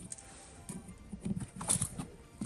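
Light irregular knocks and clicks, a cluster near the middle and end, as a metal ruler and pen are handled and set down on a cloth-covered table. Faint background music runs underneath.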